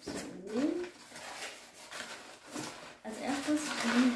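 Crumpled packing paper rustling and crinkling as it is handled and pulled out of a cardboard parcel. A short rising vocal sound comes near the start, and a voice near the end.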